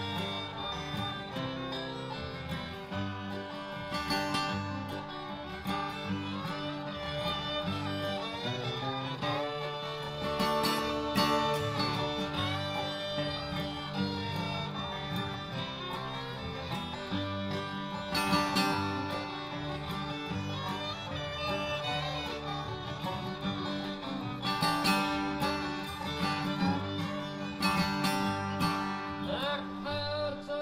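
Acoustic guitar strummed in a bluegrass rhythm, with quick up-down-up strum flourishes filling the gaps, played along with a recorded bluegrass band during an instrumental solo.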